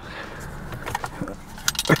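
A few light clicks and small rattles of the plastic centre-console trim and insert being handled, the clicks coming more often in the second second.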